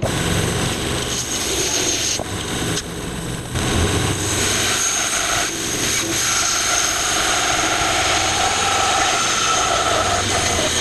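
Grizzly G0513 17-inch bandsaw running with its blade ripping lengthwise through a small log as it is pushed into the cut: a loud, steady sawing noise with a faint whine, getting a little louder about four seconds in.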